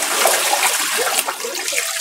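Bath water pouring out of a tipped plastic baby tub and splashing onto a wet concrete floor, a steady rush that thins out near the end.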